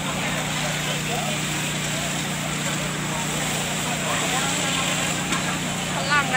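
A fire engine's pump motor running steadily, feeding a hose jet onto a house fire, under a steady rushing noise with a crowd's voices mixed in.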